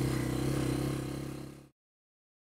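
A small off-road vehicle engine runs steadily at one pitch, then fades out about a second and a half in and cuts to silence.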